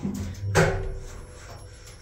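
Kone passenger lift car setting off downward: a single clunk about half a second in, over a low steady hum from the moving car.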